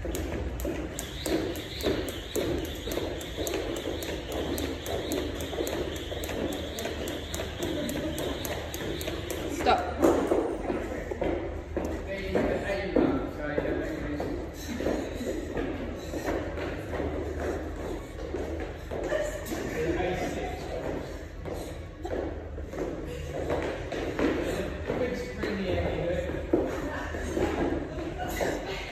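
Jump rope whipping and ticking against a rubber gym floor in a fast, even rhythm for about ten seconds. It stops with a loud thud, followed by irregular thumps and knocks of bodyweight work on a pull-up bar.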